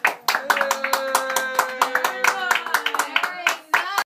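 A few people clapping by hand, with a voice calling out a long cheer over the clapping.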